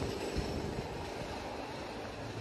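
A train running past, heard as a steady rumble.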